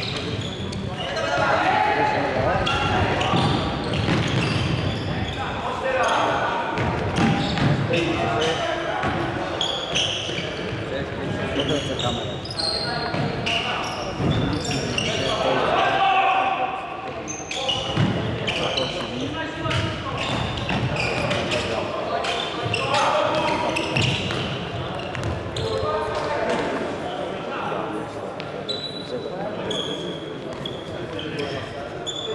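Futsal play in an echoing sports hall: players' voices calling out over the thuds of the ball being kicked and bouncing on the wooden court.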